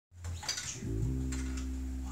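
Electric bass guitar playing low notes through an amplifier: a short low note, then a second note held for over a second, with a few light clicks above it.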